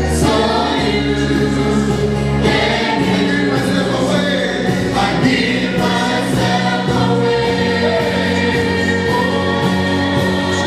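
Choir singing a gospel song, with long-held low instrumental notes underneath.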